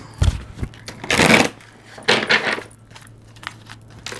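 Tarot cards being handled and shuffled on a table: a low thump near the start as the deck knocks the tabletop, then two brief swishes of cards sliding against each other about a second apart, and a few light clicks.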